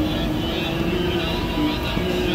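Steady mechanical drone with a few held tones in it, with voices faintly behind.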